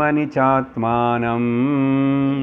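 A man's voice chanting a Sanskrit sloka in slow melodic recitation: two short syllables, then a long held note that steps up slightly in pitch near the end.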